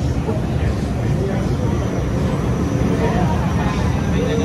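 Busy night-street ambience: voices of people nearby over a steady low rumble.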